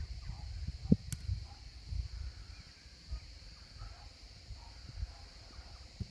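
Ambience of an outdoor football match: wind rumbling and buffeting on the phone microphone, faint distant shouts from players, and a steady high-pitched drone. There is one sharp thump about a second in.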